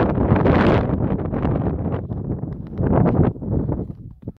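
Wind buffeting the microphone on an exposed snowy mountain ridge, coming in gusts: strongest about half a second in and again around three seconds, then dropping away near the end.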